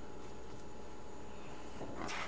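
Quiet room tone: a steady low hum and faint hiss, with no distinct sound events.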